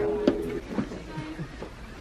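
Quiet store background: a short held voice-like hum in the first half-second, then low murmur with a few faint clicks, as shoes are handled.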